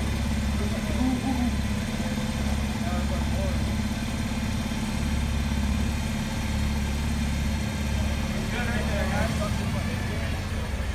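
Forklift engine running steadily with a low hum as it carries a heavy load.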